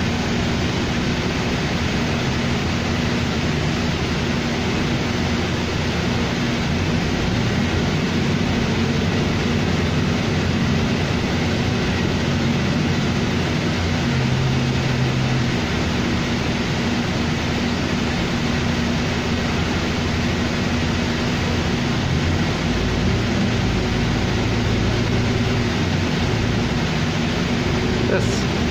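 Inside a 2007 New Flyer D40LFR diesel city bus under way: a steady drone of the engine and road noise fills the passenger cabin, with a constant low hum throughout.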